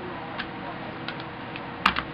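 A few light clicks from hands handling a photo print and the calendar's paper, then one sharper tap near the end, over a steady background hiss.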